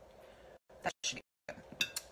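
A few light clicks and clinks of a fork against a glass jar and plate as pickled jalapeño slices are picked out and laid on a wrap, with the sound cutting out to silence twice.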